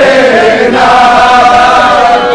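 A group of young men singing loudly together in unison, a chant with a long held note.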